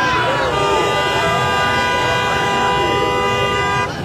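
A vehicle horn sounding one long steady blast of about three and a half seconds, starting about half a second in and cutting off just before the end, over the shouting and voices of a large crowd.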